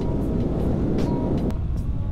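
Riding noise from a Honda Grom's 125 cc single-cylinder engine, with wind rush on a helmet-mounted mic while the bike is under way. The low rumble eases about one and a half seconds in.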